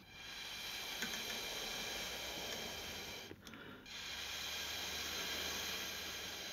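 Breath blown hard through a drinking straw onto wet fluid acrylic paint: a steady, breathy hiss in two long blows of about three seconds each, with a brief pause just after halfway.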